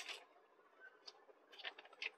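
Faint handling noise of a paper label and a semi jute saree: a soft rustle at the start, a small tick about a second in, and a short cluster of light crinkles near the end.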